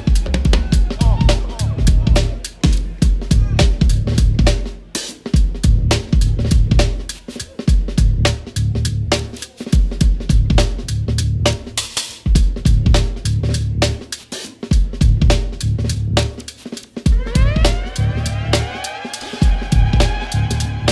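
Yamaha drum kit with Zildjian cymbals playing a swung sixteenth-note groove: kick and snare under dense hi-hat strokes, over a low sustained bass. Near the end a sliding pitched tone rises in and holds.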